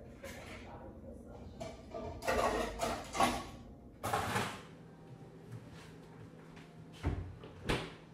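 Kitchen handling noises at an open freezer with a plastic ice cube tray: a burst of clatter and rattling, then a door-like thud about four seconds in. Two short sharp knocks follow near the end.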